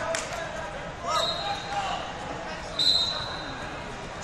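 Wrestling-tournament hall ambience: distant voices and crowd chatter echoing in a large room, with a couple of thuds. Two shrill referee whistle blasts sound from the mats, one about a second in and a shorter, louder one about three seconds in.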